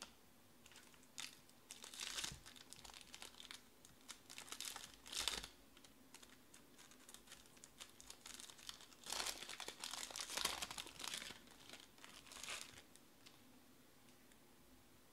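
Foil trading-card pack wrapper crinkling and tearing as it is opened by hand, followed by the cards being pulled out and handled, in irregular bursts of rustling with the busiest stretch about two-thirds through.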